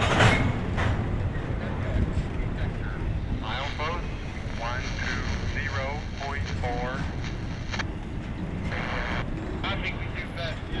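Intermodal container cars of a long freight train rolling past at close range: a steady rumble of steel wheels on the rails.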